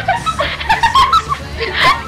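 A girl giggling and laughing in short, choppy snickers, over a steady low hum.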